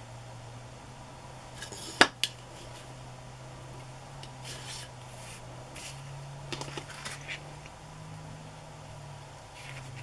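Paper and a clear plastic sheet being handled on a cutting mat: faint rustling and shuffling, with one sharp click about two seconds in and a smaller one just after. A steady low hum runs underneath.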